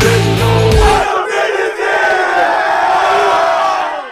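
Rock music with a heavy beat cuts off about a second in, leaving a group of football players shouting together in a huddle, one voice yelling over the rest.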